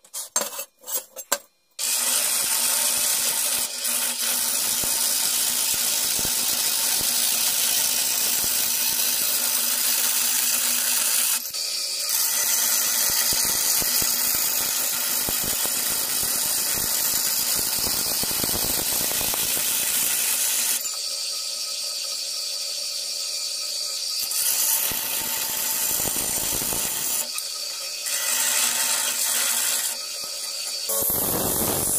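Vertical band saw running, its blade cutting through thin steel sheet: a steady hiss over a low motor hum that starts about two seconds in and shifts in tone a few times as the cut goes on. A few short handling knocks come before it.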